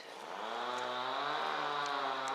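A motor vehicle's engine running close by: a steady hum with many overtones that swells up about half a second in and then holds an even pitch.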